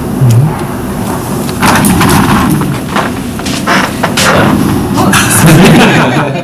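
Indistinct talking in a meeting room, broken by several sharp thumps and rustling knocks.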